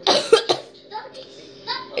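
A girl coughing: about three quick coughs in the first half-second.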